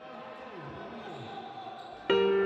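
Faint ambience of a basketball game in a sports hall, with distant voices.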